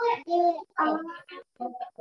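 Children's voices speaking over a video call, several short phrases in a row.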